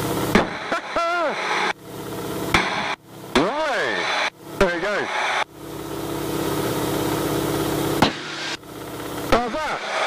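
T-6 Harvard cockpit sound over the intercom: the Pratt & Whitney R-1340 radial engine and airflow noise, cutting in and out abruptly as the microphone opens and closes. Several short tones rise and fall in pitch, one each at about one, three and a half, and four and a half seconds in.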